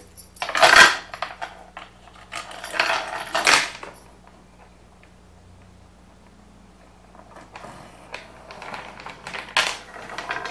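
A small metal chain clinking and rattling against pine boards as it is handled and laid out as a makeshift compass for drawing a circle. There are two louder bursts of rattling in the first four seconds, the loudest just under a second in, then a quiet stretch, then lighter clinks and scrapes near the end.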